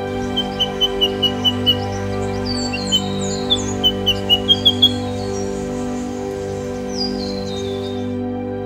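Eastern yellow robin calling: two runs of short, evenly repeated piping notes, about five a second, in the first five seconds, mixed with higher falling notes. Soft sustained background music plays underneath.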